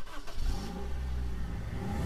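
A vehicle engine running steadily with a low hum, with some rushing noise over it.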